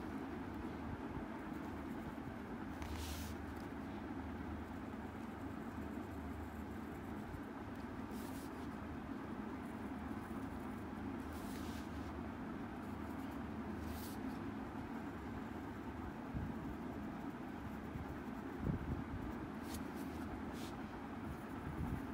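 Faint, brief scratches of an HB graphite pencil tracing lines on workbook paper, a handful of times a few seconds apart, over a steady low background hum.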